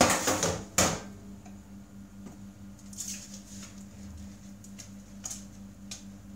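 Dishes being hand-washed in a stainless steel sink. A burst of clattering crockery ends in a sharp knock within the first second, followed by a few soft clinks of ceramic and sponge scrubbing, over a steady low hum.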